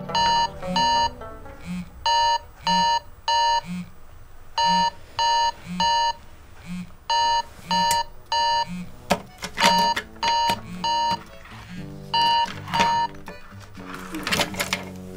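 Smartphone alarm ringing: a repeating tune of short electronic beeps in groups of two or three, with a soft low pulse about once a second beneath.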